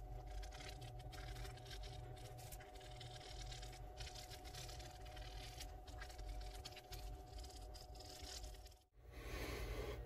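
Sandpaper rubbed by hand on a carved wooden lure body: a run of faint, quick scratching strokes over a steady low hum. The sound drops out for a moment near the end.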